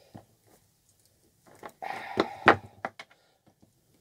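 Side cutters snipping through the VHF radio handset's split cable: a short handling rustle, then two sharp snips about two seconds in, followed by a few small clicks.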